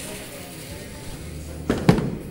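A bowling ball dropped onto the wooden lane, landing with two heavy thuds in quick succession near the end, the second the louder, over bowling-alley background noise.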